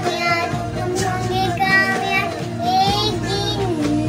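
A child singing over instrumental backing music.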